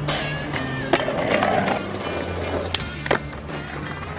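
Skateboard wheels rolling on concrete, with sharp board clacks about a second in and twice close together near the end, over background music.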